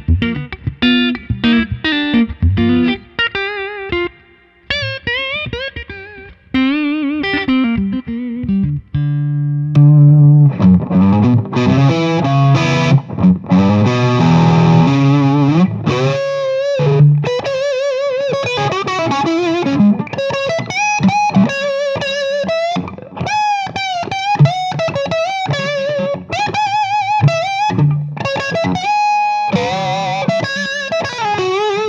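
Gibson Custom Shop 1959 Flying V Reissue, a mahogany electric guitar with humbucker pickups, played through an amplifier: a lead passage of picked notes and chords. About ten seconds in it grows louder and more sustained, and later has bent notes and wide vibrato.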